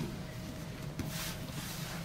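Cotton jiu-jitsu gi fabric rustling and bodies shifting on the mats as two grapplers work through a guard position, with a sharp click at the start and a soft knock about a second in, over a steady room hum.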